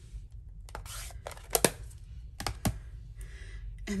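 A handful of sharp plastic clicks and taps as stamping supplies are handled on the desk: an ink pad being closed and put away and the next one picked up. The loudest click comes about a second and a half in.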